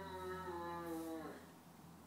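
A voice making one long drawn-out call that falls slightly in pitch, ending about a second and a half in.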